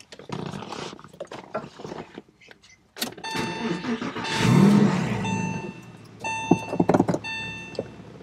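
Key clicks in the left-hand ignition of a 2001 Porsche 911 Carrera (996), then its flat-six with an aftermarket Fister exhaust cranks and starts about three to four seconds in, loudest as it catches, and settles into a steady idle. A repeating electronic chime sounds on and off over the idle near the end.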